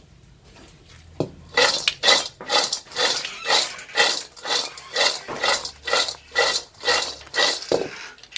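Dried wild seeded-banana pieces tossed in a metal wok over a wood fire, rattling and sliding against the pan in a steady rhythm of about two tosses a second, starting about a second and a half in. They are being dry-roasted until golden.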